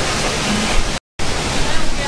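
Steady hiss of rain and wet street noise, with a short gap of complete silence about a second in.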